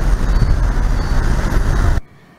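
Road traffic: cars and motorbikes driving through a junction, a steady rumble of engines and tyres.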